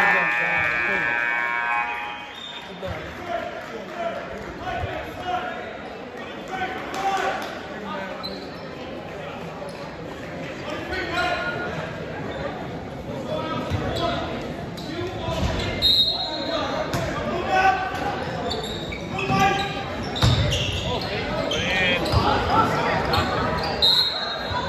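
A gym scoreboard horn sounds steadily for about two seconds at the start. Then a basketball is dribbled on the hardwood court amid crowd voices in a large echoing gym, with a couple of short high-pitched tones later on.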